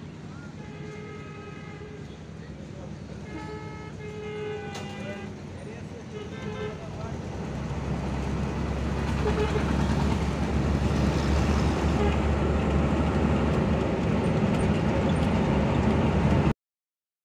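Vehicle horns honking several times over roadside traffic. From about eight seconds in, a louder steady low rumble of engine and road noise takes over, heard while riding in a moving vehicle.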